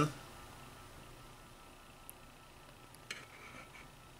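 Quiet room tone with a few faint small clicks and a brief soft rustle starting about three seconds in.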